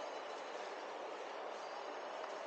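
Steady background noise of an indoor shopping-mall concourse: an even hiss of ventilation and distant activity, with a few faint high tones.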